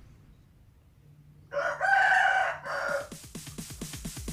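A rooster crowing once, a single pitched call of about a second starting partway in.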